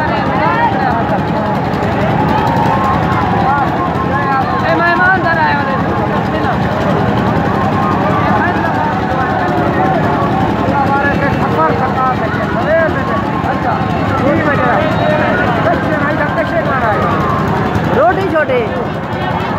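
Men talking close by, one voice after another, over a steady low mechanical rumble.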